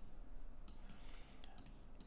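A few faint clicks of a computer mouse, bunched together a little under a second in, over quiet room noise.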